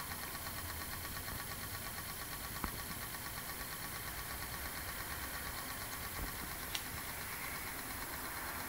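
Reed-switch pulse motor running steadily, its coil pulsing in a rapid, even rhythm as the magnet rotor spins. Two faint clicks come about two and a half seconds in and near the end.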